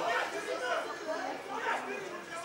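Several people's voices talking and calling out over one another, with no clear words.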